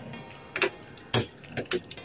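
A few short, sharp clicks and taps from hands handling a graphics card just seated in a PC case's PCIe slot, the loudest a little over a second in.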